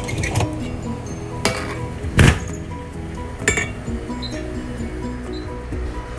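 Background music runs throughout, over about four sharp metal clinks of a steel scraper and wire donut screens being handled. The loudest clink comes a little over two seconds in.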